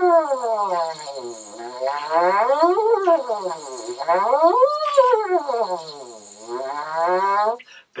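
Lips buzzing into a detached French horn mouthpiece, gliding smoothly down and up in pitch, falling and rising three times between low and high register. It is a smooth-glide buzzing exercise, in which the player says he jumped a couple of times, and it stops just before the end.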